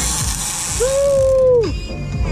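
A conventional big-game fishing reel being cranked under load, its gears and clicker ratcheting as a yellowfin tuna is reeled up to the boat. A single held high note sounds for about a second, starting a little under a second in.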